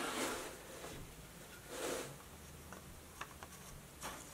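Faint handling of the hard plastic tripod-stand parts of a dress form: a soft scrape a little before halfway, then a few light clicks near the end.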